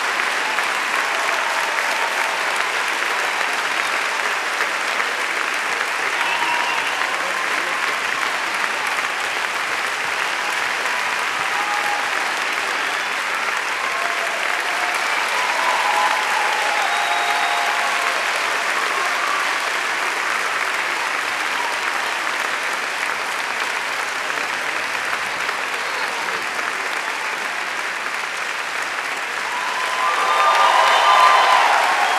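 A large audience applauding steadily, a dense unbroken sound of many hands clapping, swelling slightly about halfway through, with a few scattered voices from the crowd.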